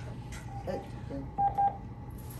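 Two short electronic beeps at the same pitch, one right after the other, about a second and a half in.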